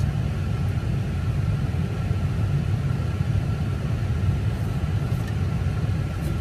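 Steady low rumble of a moving car, heard from inside its cabin.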